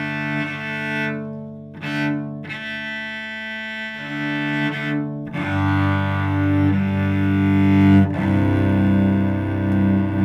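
Solo cello bowed in slow double stops, two strings sounding together, each chord held about a second before the bow moves on. This is a calm string-crossing exercise. The chords sound lower and fuller in the second half.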